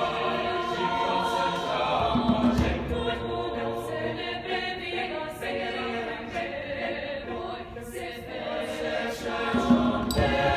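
A mixed choir of young men and women singing long held chords in several parts.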